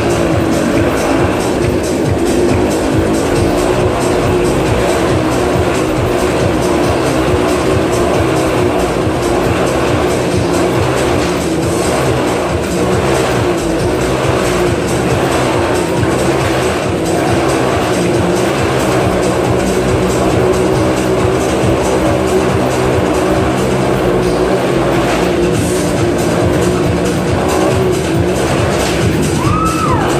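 Several motorcycle engines running at once inside a steel-mesh globe of death, their pitch rising and falling as they circle, over loud show music.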